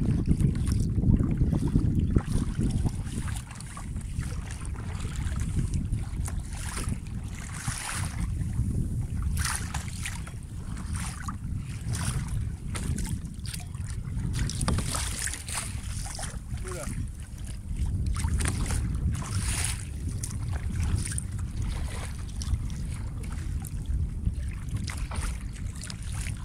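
Wind rumbling on a phone microphone out on open water, heaviest for the first few seconds, with scattered short splashes of kayak paddles dipping into the sea.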